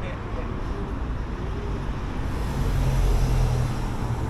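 Street traffic rumble, swelling as a vehicle passes about halfway through and then easing.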